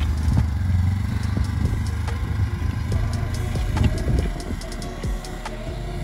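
Engine of a side-by-side UTV on rubber tracks running steadily as it tows a wheeled ice-fishing shack through slush and snow. A low drone with many small clicks and rattles over it, a little quieter in the last couple of seconds.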